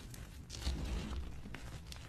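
Blocks of gym chalk crushed and squeezed in bare hands, crumbling into loose powder with soft crunches and crackles, a fuller crunch about half a second in.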